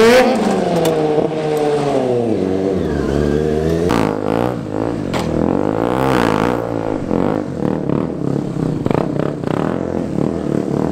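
KTM stunt motorcycle's single-cylinder engine revving up and down repeatedly, its pitch rising and falling in several swells, with short choppy blips and rattles in the last few seconds.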